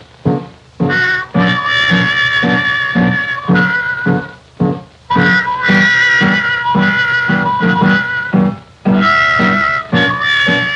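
Late-1920s jazz orchestra playing on an early optical film soundtrack: reeds and brass hold sustained chords over a steady rhythm-section beat, with brief breaks between phrases.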